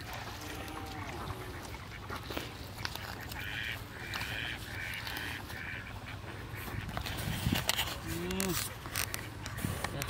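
Ducks quacking, a quick run of about five raspy calls midway, over a steady low rumble.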